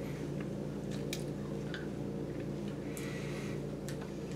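Faint mouth clicks and smacks from sucking on a very sour hard candy, with a short soft breath about three seconds in, over a steady low hum.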